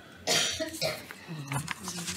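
A person coughing: a sharp cough about a quarter second in and a smaller one just under a second in.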